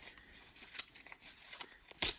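Faint rustling and crinkling of a paper envelope and its contents being handled, with a few soft ticks.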